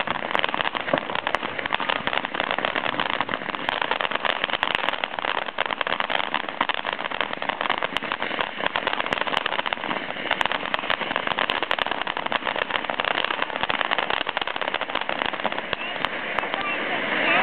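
'Unicorn' ground fountain firework spraying sparks: a steady rushing hiss dotted with fast, fine crackles.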